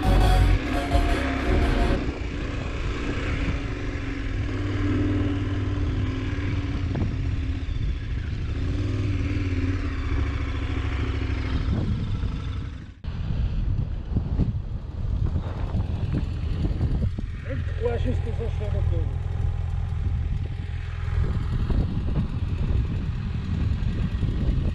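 Motorcycle engine running at low revs with wind noise on the camera microphone while riding slowly over grass. About halfway through the sound breaks off sharply, and a similar stretch of engine and wind noise follows.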